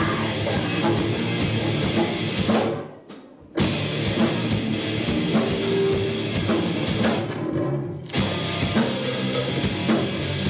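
Live rock band playing an instrumental passage on electric guitars and drum kit. About three seconds in the band stops dead for half a second, then comes straight back in, and it thins out briefly again near eight seconds.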